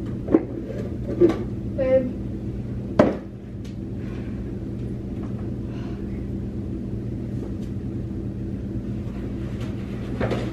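A few sharp knocks and handling noises as someone gets up off a kitchen floor and moves about, the loudest about three seconds in, over a steady low hum. A brief vocal sound comes about two seconds in.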